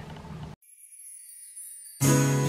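Quiet: faint room tone that cuts off abruptly about half a second in, followed by a faint high shimmer with no low sound under it.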